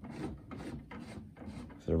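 Soft, irregular rubbing and scuffing noises, about two or three strokes a second, with a spoken word near the end.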